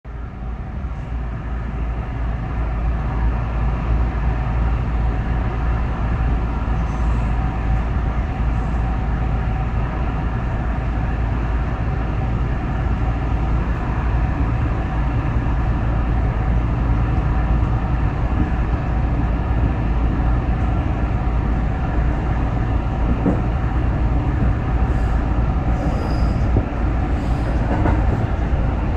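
JR West 221 series electric train running along the track, heard from inside the front car as a steady rumble of wheels and running gear. The sound swells up over the first three seconds, then holds even.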